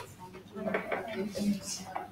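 Low voices talking in a room, with light clinks and clatter of small objects being handled.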